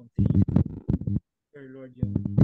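Speech: a voice praying aloud in short phrases, with a louder phrase followed by a quieter one.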